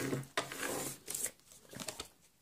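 Paper trimmer's scoring blade drawn along its track, scoring a line in designer paper: a scraping run with two sharp clicks, about a third of a second in and just over a second in, then light paper rustling as the sheet is moved.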